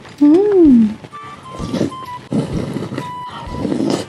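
A closed-mouth 'mmm' of enjoyment that rises and falls in pitch, then chewing and a slurp of soup broth from a spoon, over light background music.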